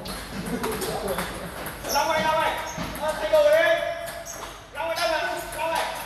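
Table tennis ball clicking off bats and the table in a rally. From about two seconds in, loud, drawn-out voices of people in the hall run over it.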